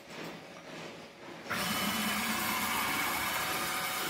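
Stepper motor driving a heavy-duty ball screw X-slide whose carriage carries a 4 kg load at 75 mm per second: a steady mechanical whine over a low hum and hiss, starting suddenly about a second and a half in.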